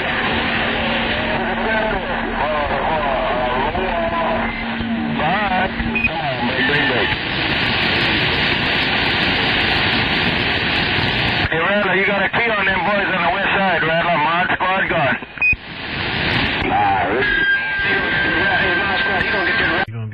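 CB radio receiver on 27.025 MHz playing a long-distance skip channel: loud hiss and static with faint, garbled voices fading in and out. A steady low hum runs through the first few seconds, the middle is mostly plain static, and a steady whistle comes in near the end.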